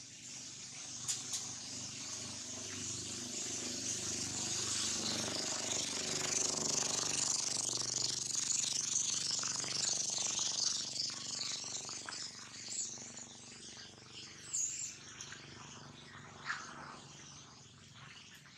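Outdoor ambience: a steady high-pitched hiss that swells over the first half and fades toward the end, with a few short chirps and clicks.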